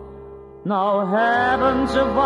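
Recorded pop ballad: a soft stretch of sustained low accompaniment, then about two-thirds of a second in a male tenor voice comes in with an upward slide and holds notes with wide vibrato over the band.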